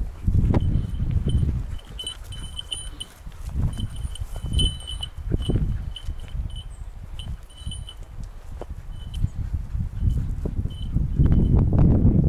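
Small bell on a hunting dog's collar tinkling in short, irregular rings as the dog moves through the brush; the rings thin out after about nine seconds. Low rumbling noise runs underneath and grows louder near the end.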